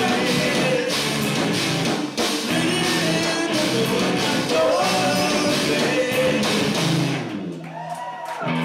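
Live rock band playing with electric guitars, bass, drums and sung vocals. About seven seconds in, the drums and voice drop away and the guitars ring on alone.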